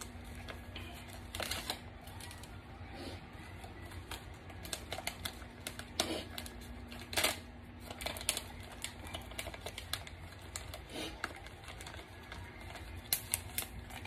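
Scattered small clicks and taps of a plastic Razer Zephyr face mask and its filters being handled and fitted, with a few sharper clicks, over a faint steady hum.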